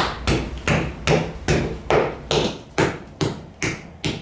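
A potter tapping the inside wall of a hand-built raku tea bowl's soft clay with a rounded white tool while shaping it. There are about ten quick, even knocks, roughly two or three a second.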